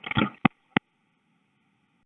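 Recorded analog phone line at hang-up: a brief burst of sound, then two sharp clicks about a third of a second apart, the line's polarity reversal signalling that the far end has hung up. Faint line hiss runs underneath and cuts off near the end.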